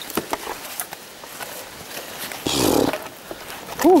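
Brush rustling and twigs cracking as a person forces his way through dense undergrowth, with a loud strained groan of effort about two and a half seconds in and a short grunt just before the end.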